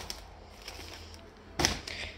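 Quiet room noise, then one short handling sound about one and a half seconds in, as groceries and the phone are moved about on the table.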